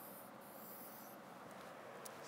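Faint scratch of a felt-tip marker on a whiteboard as a curved brace is drawn under a number line; the stroke stops a little over a second in.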